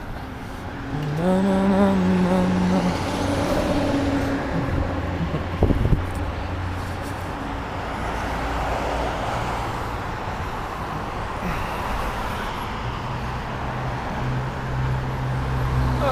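Street traffic at a town intersection: cars driving past and engines running, with a sharp knock about six seconds in and a steady low engine hum from a vehicle near the end.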